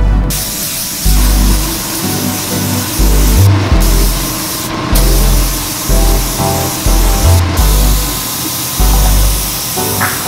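A compressed-air gravity-feed spray gun sprays paint with a steady hiss that breaks off briefly a few times. Background music with a heavy bass beat plays over it and is the loudest sound.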